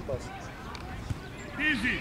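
A football kicked once, a single dull thump about halfway through, with a man's shout near the end.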